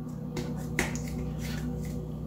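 A handful of short, sharp clicks and taps as fingertips press and pat a medical silicone scar pad down onto the skin of a foot, over a steady low hum.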